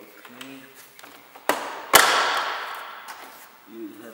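Plastic retaining clips of a car door trim panel popping loose as the panel is pulled off the door: a sharp click about a second and a half in, then a much louder snap half a second later that trails off over about a second.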